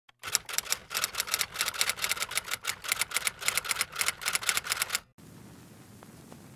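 Typewriter keys clacking in a fast, uneven run, about six strikes a second, for about five seconds, then stopping abruptly and leaving only faint hiss.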